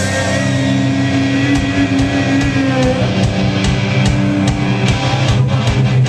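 Heavy metal band playing live: distorted electric guitars and bass holding sustained chords, with drum hits coming in at a steady pulse of about three a second in the second half.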